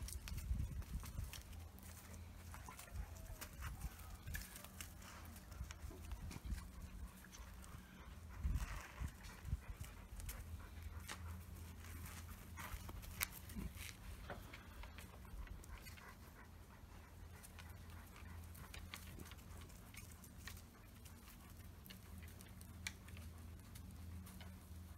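Faint sounds of leashed dogs moving about on sandy ground: scattered light clicks and scuffs from paws, collars and leash, with a few low thumps near the start and about eight seconds in. A steady low hum runs underneath.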